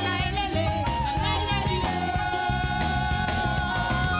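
Live séga band music: an electric guitar plays a sustained, bending lead line over bass and drums, with a new held note about two seconds in.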